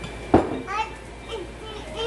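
A sudden thump, then a toddler's short babbling vocal sounds.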